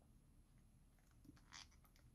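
Near silence: room tone, with a few faint small clicks and a brief faint rustle of hand handling about one and a half seconds in.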